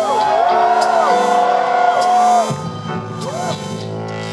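Live rock band playing a soft, held backing with high notes that glide up and down in arches; the top held note drops away about two and a half seconds in, leaving a lower steady chord.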